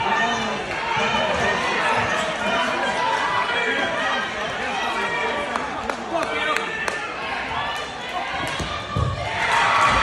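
Crowd chatter echoing in a gymnasium, many voices talking at once, with a few sharp knocks. The voices swell near the end.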